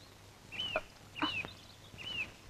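A bird calling with short chirps, each rising then falling, about two-thirds of a second apart.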